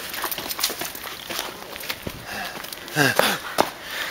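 Scattered clicks and scuffs, then a man's voice about three seconds in: two short calls that fall in pitch.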